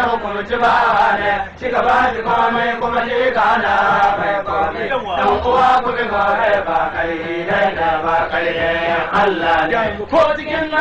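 Hausa praise song: chant-like vocals sung without a break. The sound is narrow and dull, cut off in the treble like an old recording.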